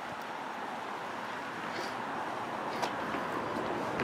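Steady outdoor background noise of distant road traffic, slowly growing louder, with a few faint clicks.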